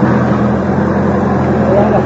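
A backhoe loader's diesel engine running steadily with a low, even hum, with men's voices over it.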